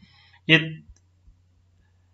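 A few faint clicks of a computer mouse around a single short spoken word.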